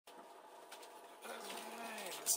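A steady buzzing hum inside a TGV carriage, growing louder about a second in.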